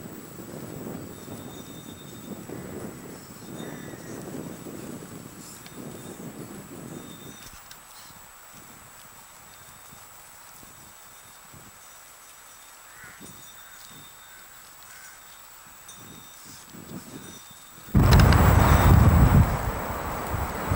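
Outdoor wind rumbling on a camcorder microphone, uneven for the first several seconds and then easing. A sudden loud gust buffets the microphone about two seconds before the end, over a faint steady high whine.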